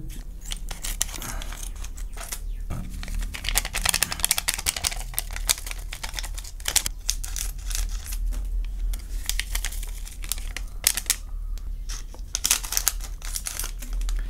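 Plastic seasoning sachets crinkling as they are handled, snipped open with scissors and shaken out: a dense, irregular crackling with sharper snips and rustles.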